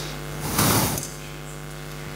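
Microphone handling noise: one brief, loud rustling thump about half a second in, over a steady low electrical hum from the sound system.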